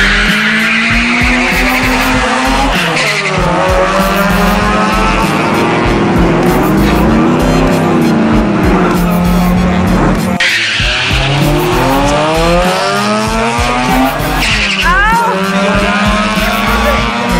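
Drag-racing car engines revving hard and accelerating, their pitch climbing and dropping again and again as they shift through the gears, with music underneath.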